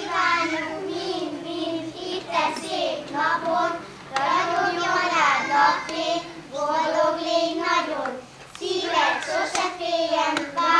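A group of children singing a song together in unison, in phrases of a second or two with held notes and short breaks between them.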